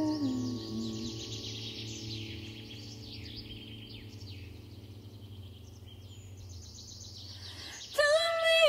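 Wild birds singing, with quick repeated chirps and trills, over the soft ringing of bandura strings that slowly fade. A last low note glides down and ends about a second in.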